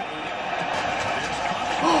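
Televised NHL hockey game playing in the room: steady arena crowd noise with a broadcast commentator's voice.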